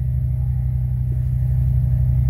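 Steady low hum and rumble, even and unbroken.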